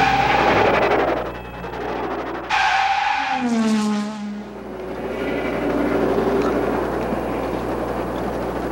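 Car engine revving, its pitch sliding down about halfway through, followed by steady rushing engine and tyre noise.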